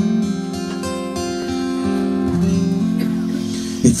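Acoustic guitar strummed under a lap-style resonator guitar played with a slide, holding sustained notes that shift to new ones about halfway through. Singing comes back in at the very end.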